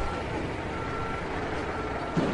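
A backup warning alarm beeping about once a second, each beep about half a second long, over a continuous rumbling noise.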